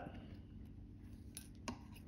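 Quiet room with a faint steady low hum, and two small clicks about a second and a half in as metal aviation snips and cut pieces of aluminum can shim are handled on a stone countertop.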